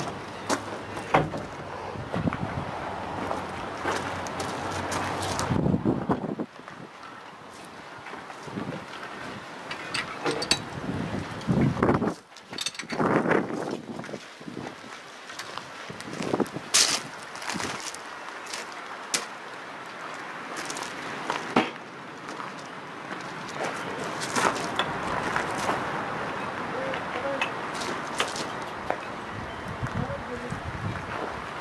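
Scattered clicks and knocks of metal parts on a Sheldon metal lathe being handled and worked on by hand, over a steady background hiss.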